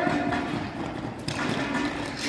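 Ball-hockey players running in shoes on a plastic tile rink floor, with clattering footsteps and sticks and a sharp knock just past a second in.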